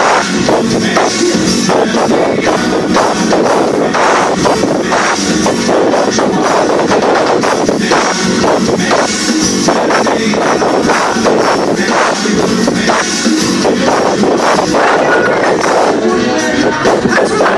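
Live band playing loud amplified music with electric guitars and a drum kit, a steady beat throughout.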